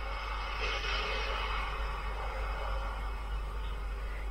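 Steady, muffled city background noise coming through a phone's speaker on a video call, with no distinct event standing out.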